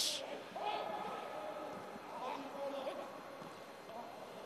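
Faint shouts of footballers calling to each other across the pitch, carrying in a near-empty stadium over a low steady background hiss.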